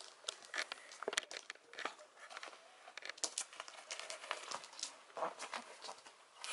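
A flurry of light clicks, taps and crinkly rustles: a cat scrabbling and batting at a dental chew on a vinyl floor.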